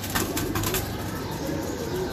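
Domestic pigeons cooing in the loft, low and wavering, with a few light clicks and rustles in the first second.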